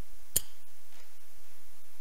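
A single sharp click about a third of a second in, from a spring-loaded projectile apparatus as one small ball is knocked out sideways and the other drops straight down.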